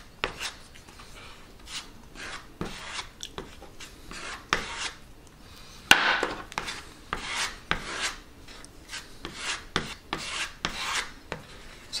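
Steel knife blade mixing two-part wood filler and its hardener on a wooden board: a run of irregular scraping, smearing strokes, about one a second, with a sharper scrape about six seconds in.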